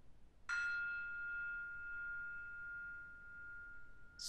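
A single bell-like chime sounds about half a second in: one clear ringing tone that fades slowly over the next few seconds. It marks the end of a timed rest in the pose.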